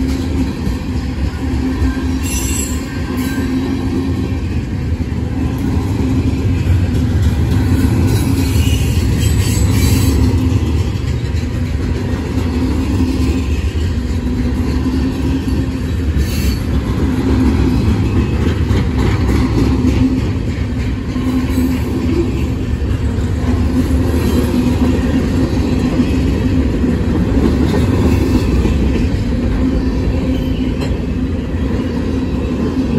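Loud, steady rumble of a long freight train's cars rolling past close by: tank cars, a gondola and flatcars running over the rails at low speed.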